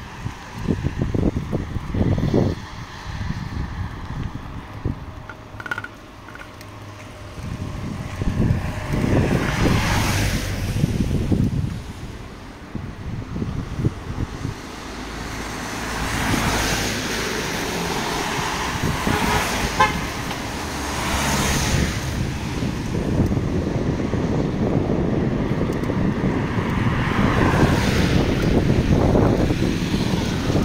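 Cars driving past on a wet road, their tyres hissing on the wet asphalt. Each pass swells and fades: once about ten seconds in, then twice more later on. A low rumble runs underneath.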